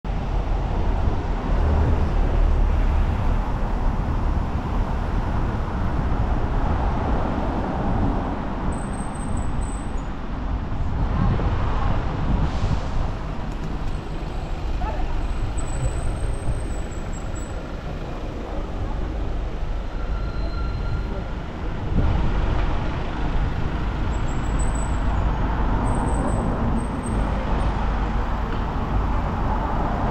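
Wind rushing over a bicycle-mounted action camera's microphone while riding through city traffic, with engine and tyre noise from surrounding cars, vans and buses. A few brief high-pitched squeals come and go.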